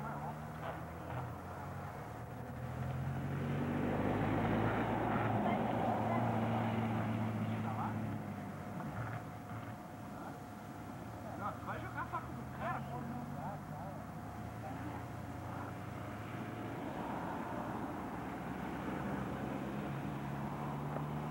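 A vehicle engine running, louder for a few seconds near the middle, with faint voices of people in the background.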